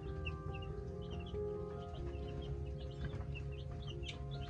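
A brood of baby chicks peeping, many short high chirps several times a second, over background music.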